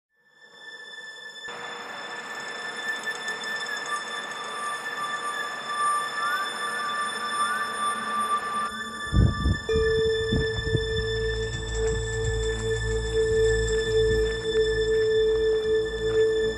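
Background music: a slow ambient score of held tones that fades in from silence, with a deep low hit about nine seconds in followed by a low drone.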